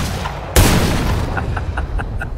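Loud, deep bangs: the fading tail of one at the start, then another about half a second in that rings on and slowly dies away. A few faint ticks follow near the end.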